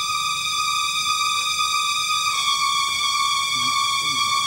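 Background film-score music: a sustained, high electronic tone, held steady and stepping slightly lower in pitch about two and a half seconds in.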